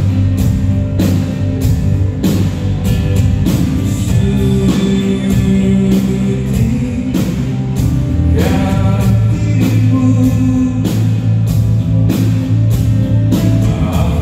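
Pop-rock band playing live through an arena PA system, with drum kit, guitar and a lead vocal. The steady drum beat runs under sustained chords.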